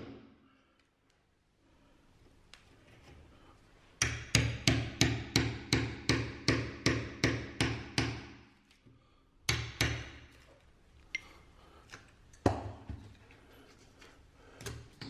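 Club hammer striking a small cold chisel, chopping out soft lightweight masonry blocks. About four seconds in comes a quick run of a dozen or so blows at about three a second, then a few scattered strikes.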